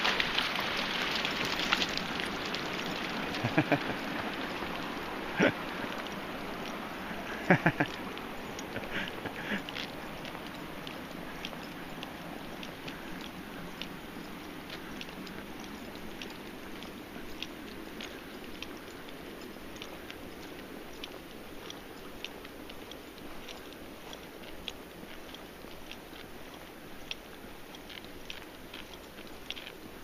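Rushing water noise that fades away over the first ten seconds or so, with faint scattered ticks throughout and a brief laugh about eight seconds in.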